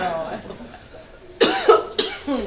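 A man's voice, then a sudden loud cough about one and a half seconds in, a comic exaggerated cough in a stage sketch.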